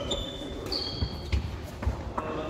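Sports shoes squeaking on a wooden sports-hall floor, several short high squeaks, with a few dull thuds in the second half, echoing in a large hall.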